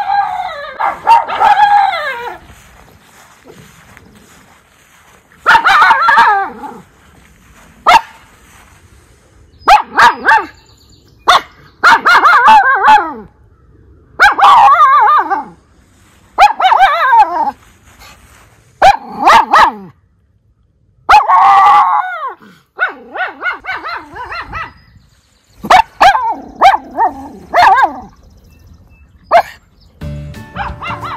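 Miniature schnauzer barking in repeated loud bouts of high, yelping barks, many falling in pitch, with short pauses between bouts: alert barking at someone heard nearby.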